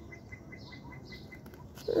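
A bird chirping faintly in a fast, even series of short high pips, about ten a second, stopping about three-quarters of the way through.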